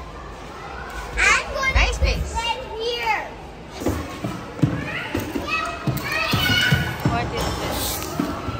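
Children's voices, high-pitched shouts and chatter, with a run of short knocks from about halfway through.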